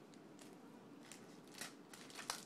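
Faint handling noise of packaged craft supplies: a few soft clicks and rustles of plastic packaging as clear stamp sets are put down and picked up.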